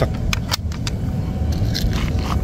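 A few quick light clicks from an air rifle being handled, over a steady low background rumble.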